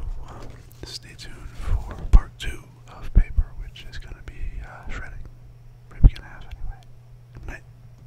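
A man whispering close to the microphone, with a few sharp low thumps about two, three and six seconds in.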